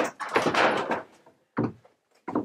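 Long reclaimed wooden bleacher boards knocking and scraping against each other as one is lifted off a stack, followed by a shorter wooden knock about one and a half seconds in.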